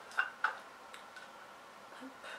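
Two small clicks about a quarter second apart from fingernails and fingers working the plastic lid of a cosmetic cream jar, which does not open because the jar is still sealed.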